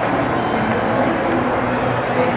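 Steady murmur of a crowd talking in a large, echoing indoor hall, many voices blurred together with a background hum.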